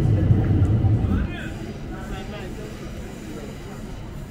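Busy street ambience: a heavy low rumble stops abruptly about a second in, leaving nearby passers-by talking over quieter background traffic.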